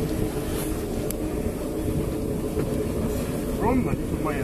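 A boat engine running steadily, with wind and sea noise. A voice is heard briefly near the end.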